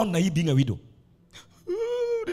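A man's voice making a falling, drawn-out vocal sound, then a pause, then from about a second and a half in a long, high, held wailing cry.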